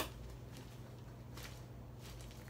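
Faint handling of nitrile gloves as they are peeled partway down the hands, with a short sharp click at the very start and a brief rustle about one and a half seconds in, over a steady low room hum.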